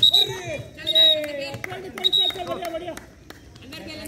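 Three loud, short shouts from players about a second apart, over other voices during a kho kho game.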